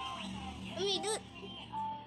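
Music with a steady beat playing while children dance, and a child's high-pitched voice cutting in loudly about a second in.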